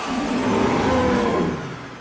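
Cartoon T. rex roar sound effect, a noisy growl that swells over the first second and then fades away.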